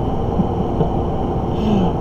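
Steady low background rumble, with a faint brief chuckle from a man near the end.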